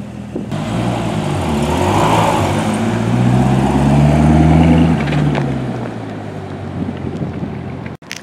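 Corvette V8 running as the car pulls out, its low note swelling to its loudest about four to five seconds in and then fading.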